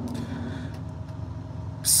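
Steady low rumble of an idling truck engine heard inside the cab, with a constant low hum.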